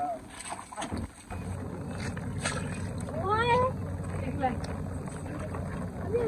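A person's voice calling out once, rising in pitch, about three seconds in, over a steady low rumbling noise.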